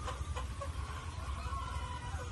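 Chickens clucking, a few short clucks in the first half, over a steady low rumble.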